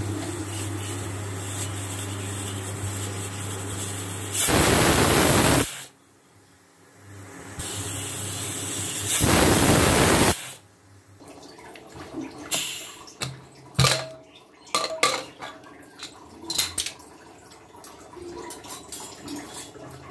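Aluminium pressure cooker releasing its steam in two loud hisses of about a second each, over a low steady hum from the induction cooktop. Sharp metallic clicks and clatter follow as the cooker's lid is worked open.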